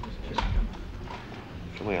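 Footsteps on the wrestling ring's floor: hollow knocks and thuds of boots on the canvas-covered boards, the loudest a heavy thump about half a second in.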